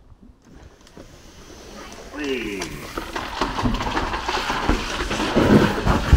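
A person climbing into a plastic tube slide and starting down it: scraping and knocking on the plastic, with a hollow rumble that grows louder from about two seconds in.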